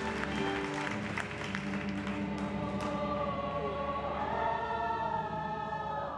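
A stage-musical chorus sings long, held notes over accompaniment. A few sharp claps or clicks sound in the first three seconds, before the voices settle into sustained chords.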